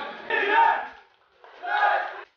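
Spectators shouting at a boxing bout: two loud shouts about a second apart.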